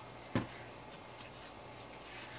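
A single knock about a third of a second in as a bottle is set down on a tabletop, followed by a few faint ticks.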